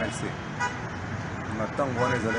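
A man talking, with city traffic in the background.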